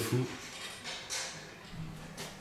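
A man's last spoken word trails off, then a quiet room with a brief faint rustle about a second in.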